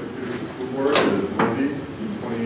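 Speech from the meeting room, broken about a second in by two sharp knocks less than half a second apart, a wooden or hard clunk such as a table or drawer being struck.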